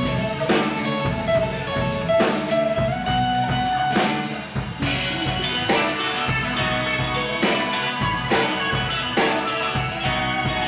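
Live rock band playing an instrumental passage: a drum kit keeps the beat under guitars, bass and keyboard, with a held melodic line over it.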